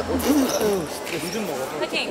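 Table tennis ball ticking on the table as the server readies his serve: one sharp tick at the start and another near the end, with faint voices underneath.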